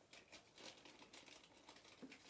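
Near silence with faint, irregular rustling and small clicks of hands handling small objects.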